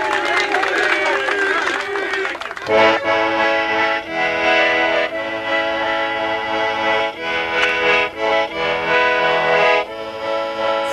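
A crowd of voices for the first couple of seconds, then an accordion starts playing a tune, its chords changing about once a second.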